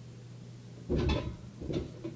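A person landing on a bed: a heavy thump about a second in, followed by a couple of smaller knocks as the body and bed frame settle, over a steady low hum.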